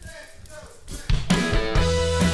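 A live band starts playing a song about a second in, with low sustained bass notes under drum hits, after a near-quiet first second.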